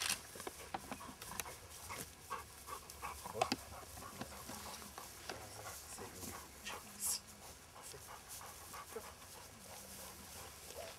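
A Labrador retriever panting after a retrieve, in short quick breaths, with a few scattered clicks.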